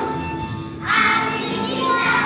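Group of young children singing a Christmas carol together over backing music, the voices coming in louder about a second in.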